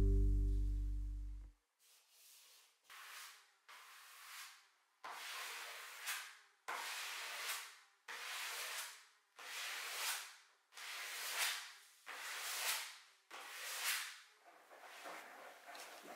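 Background music fades out in the first second or so. Then comes a series of about ten rubbing strokes of hands working wallpaper against a wall, each about a second long, swelling and stopping sharply, roughly one a second.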